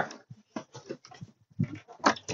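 A few faint, brief vocal sounds from a person's voice, broken into short bursts.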